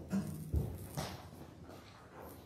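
Congregation moving about in a church hall: a short low hum at the start, a heavy thump about half a second in and a sharper knock about a second in, then faint shuffling.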